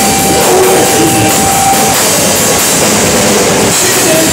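A live rock band playing an instrumental passage: drum kit and electric guitars, with a held note over roughly the first two seconds.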